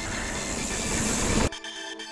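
Mountain bike riding noise on a dirt trail, with wind on the microphone and tyre rumble. It cuts off suddenly about one and a half seconds in, leaving background music.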